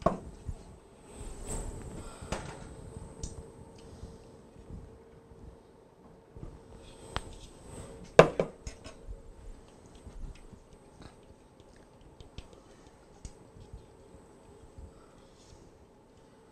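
A spatula scraping and knocking against a ceramic mixing bowl as thick pumpkin filling is poured out into a baking pan, with scattered light clicks and one sharper knock about eight seconds in.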